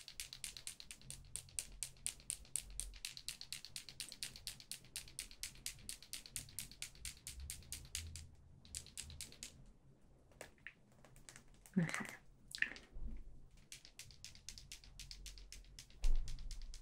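Rapid, even tapping clicks close to the microphone, about five or six a second, from an eyeliner being handled as it is readied for lining. They thin out and stop about nine seconds in, and a soft voice follows near the end.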